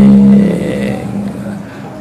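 A man's voice through a microphone, a drawn-out syllable fading away over the first second, over a steady low hum.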